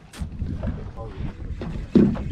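Wind on the microphone over a low, steady rumble aboard a boat at sea, with a sharp click just after the start and a short thump near the end.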